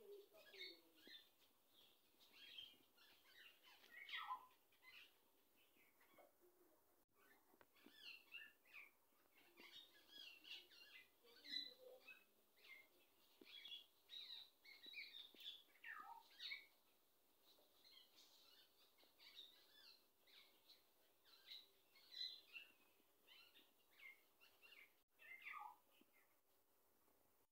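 Small birds chirping faintly: many short, high calls scattered throughout, some of them quick falling whistles.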